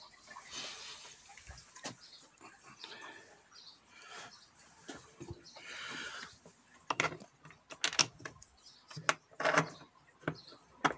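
Handling noise from a wooden beehive and its brass thumb nuts: scattered light clicks and knocks with brief rustling, and a run of sharper clicks in the last three seconds.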